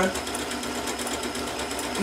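Janome sewing machine running steadily at reduced speed, its needle sewing a feather stitch across two fabric edges.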